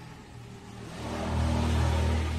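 A motor vehicle's engine passing close by, swelling to a loud hum about a second in.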